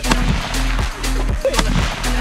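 A single rifle shot right at the start, over background music with a steady beat.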